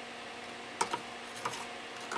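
A few short clicks and scrapes of a thin metal tool knocking against the plastic grille and blades of a Honeywell HF-810 turbo fan as debris is picked out through the grille, starting about a second in, over a faint steady hum.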